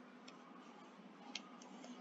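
Near silence: faint room tone with two faint, short clicks, one near the start and one a little past the middle.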